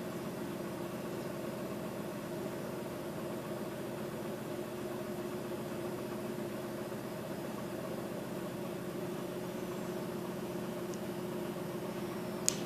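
A steady mechanical hum from a small running motor, holding a few even tones without change.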